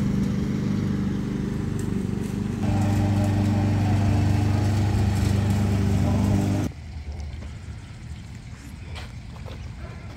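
Petrol lawn mower engine running steadily while cutting grass. It grows louder about three seconds in, then stops abruptly near seven seconds, leaving only a faint background.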